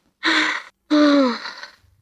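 A person crying out twice in distress, a short cry and then a longer one that falls in pitch as it fades.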